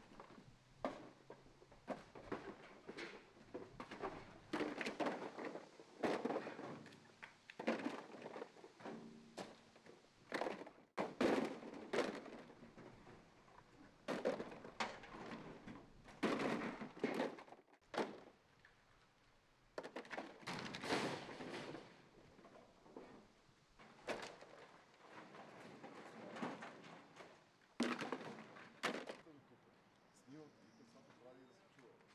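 Hollow plastic stadium seats clattering and knocking as they are tossed one after another onto a pile, in loud, irregular bursts.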